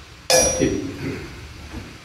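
A single sharp metallic clang about a third of a second in, with a bright ring that fades over about a second.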